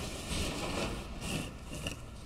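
Rustling and light scraping on a table in a few short bursts, from objects being handled and moved.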